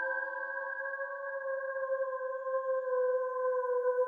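Slow electronic music: one long synthesizer note held with a slight downward sag in pitch and a gentle wavering in loudness, as a lower note fades out in the first second.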